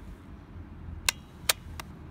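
Plastic clicks from a 45cc petrol chainsaw's throttle trigger and lock button as the trigger is pulled and the throttle lock disengages: three sharp clicks in quick succession, starting about a second in.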